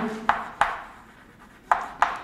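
Chalk writing on a chalkboard: a few sharp taps as the chalk strikes the board, with short scratching strokes between them.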